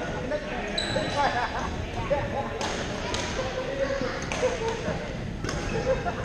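Badminton rackets striking a shuttlecock in a rally: four sharp cracks, starting a little over two seconds in and coming every half second to a second, over a steady background of voices in a gym hall.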